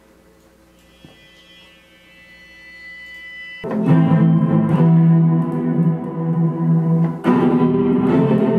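Chopped music sample played from a MIDI keyboard. A quiet held chord swells, then a loud sustained chord with deep low notes comes in suddenly about three and a half seconds in and is struck again near the end.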